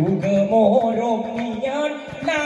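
Didong Gayo singing: a man's voice carrying a wavering, ornamented melody, entering at the start, over a steady rhythm of percussive strokes from the seated group.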